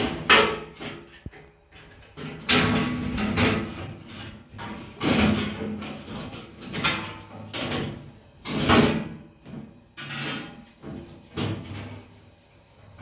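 Bread-making handling sounds: dough being slapped, shaped and rolled out with a thin rolling pin on a wooden board, heard as a string of irregular scrapes and knocks about a second or two apart.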